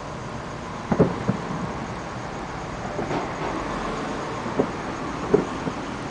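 Distant fireworks going off as several irregular thuds, the loudest about a second in, over a steady background noise of traffic.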